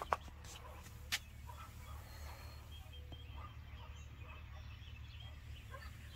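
Faint outdoor morning ambience: a steady low rumble with scattered faint bird calls, and two sharp clicks, one right at the start and one about a second in.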